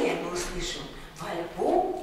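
Audience applause dying away, then a few short cries that rise in pitch, the loudest about a second and a half in.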